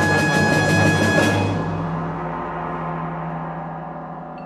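Symphony orchestra music: a loud percussion crash with a rapid roll lasting a little over a second, then a long fade over a low held note.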